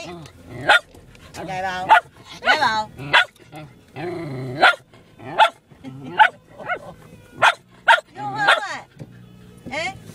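Shetland sheepdog barking repeatedly in short, sharp barks, about one a second, with a few longer, wavering cries in the first few seconds. It sounds like insistent, demanding barking.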